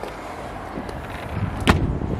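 A single sharp knock about three-quarters of the way through, against a steady rushing background.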